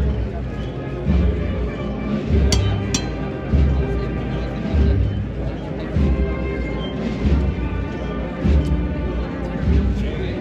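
Procession band playing a slow march, with a heavy bass drum beat about every second and a quarter under sustained held chords.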